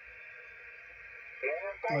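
Faint, steady hiss of HF band noise from a QRP ham radio transceiver's speaker, cut off sharply above the voice range. A man's voice comes in near the end.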